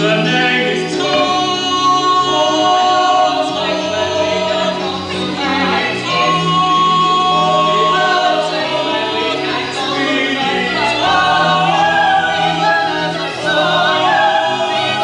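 Musical-theatre singing: several voices sing together in long held notes over a steady instrumental accompaniment.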